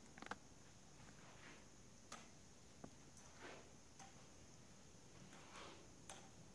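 Near silence with faint footsteps and a forearm crutch on carpet: a few soft shuffles and occasional light clicks and taps as a man walks slowly with the crutch.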